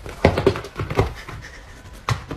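Two cats, a hairless cat and an orange tabby, in a brief scuffle: a quick flurry of sharp, noisy sounds in the first second or so, then quieter.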